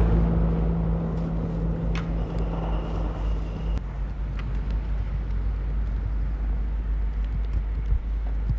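Car engine sound on a snowy street: a low steady rumble with an engine hum that changes abruptly at a cut a little before the middle. After that a car drives slowly on the snow-covered road.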